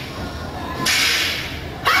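A sudden burst of hissing noise from the act's soundtrack, heard through the hall's sound system, fades over about a second. Just before the end, a quick rising sweep leads into loud electronic music.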